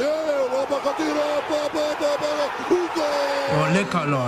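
A voice singing a short wordless tune: a run of quick, evenly repeated notes, then one long held note near the end.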